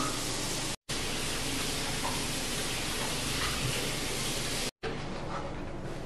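Steady, even hiss of background noise with no clear pitch or rhythm, dropping out to silence twice for a split second, about a second in and near five seconds in.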